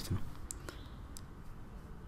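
A few faint, sharp clicks spread over the two seconds, over low room noise.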